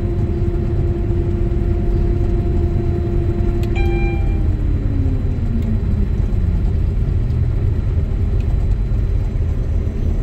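Combine harvester running, heard from inside the cab: a steady low engine rumble under a steady hum. About four seconds in, a short beep sounds and the hum falls in pitch over about two seconds as the grain unloading auger is shut off at the end of dumping.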